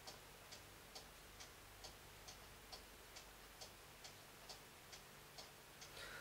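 Faint, steady ticking of a clock in a quiet room, about two ticks a second.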